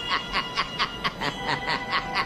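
A steady run of chuckling laughter, about four to five short pulses a second, over faint steady music tones.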